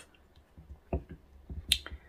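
A few faint taps and then one sharp click near the end, small handling or mouth noises during a pause in talk.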